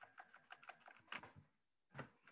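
Faint keystrokes on a computer keyboard: a quick run of about a dozen light taps, with slightly louder ones a little after a second in and at the end.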